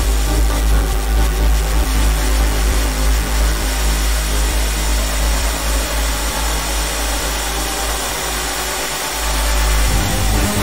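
Electronic music: a dense, hissy synth texture over a steady deep bass, with no clear beat, dipping a little in level near the end before coming back up.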